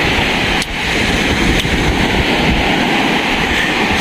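Ocean surf washing up a sandy beach, a steady loud rush, with wind buffeting the microphone.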